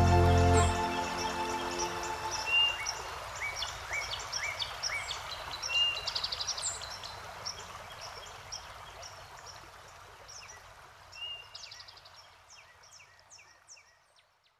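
The song's final sustained chord dies away in the first second, leaving recorded birdsong, many short chirps, over a soft stream-like rush, which fades out gradually to silence at the very end.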